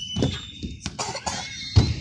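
Faint children's vocal sounds and small knocks around a playground slide, with one dull low thump just before the end.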